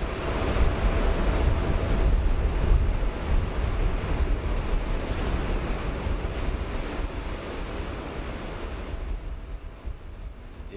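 Wind and rough open sea: a steady rushing noise with heavy wind buffeting on the microphone. It is loudest in the first few seconds and eases off toward the end.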